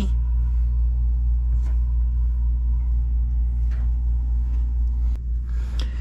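A steady, loud low electrical hum with a buzz of evenly spaced overtones, coming from the Victron Quattro 48-volt inverter/charger compartment. It weakens about five seconds in.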